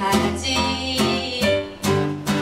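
A woman singing while strumming a steel-string acoustic guitar, a live acoustic indie song with regular strummed chords under the voice.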